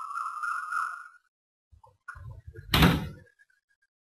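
A drawn-out squeak that rises slightly in pitch over about a second and a half, then after a pause a low rumble and a loud thump about three seconds in.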